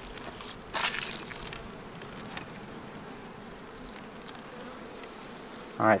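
Honey bees buzzing around a busy hive: a faint, steady hum, with a short burst of noise about a second in.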